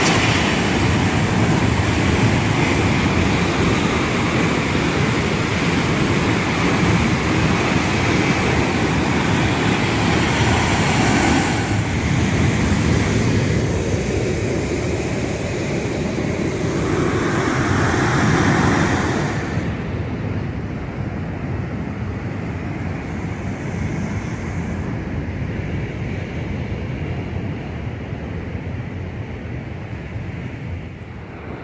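Waterfall rushing through a narrow rock canyon, a loud, steady roar, with wind rumbling on the microphone. About twenty seconds in, the sound turns duller and quieter.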